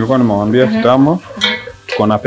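A person's voice in long drawn-out sounds, breaking off after about a second and returning near the end. Under it, a spoon stirs food in a pot on the stove.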